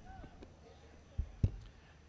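Quiet ground ambience with faint distant voices, broken by two short, soft, low thumps a little after a second in.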